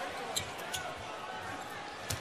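A basketball being dribbled on a hardwood court, with two sharp bounces in the first second, over the steady murmur of an arena crowd.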